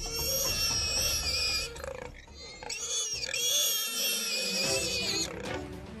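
Shrill animal squealing at an African wild dog kill, in two long bouts with a short lull about two seconds in.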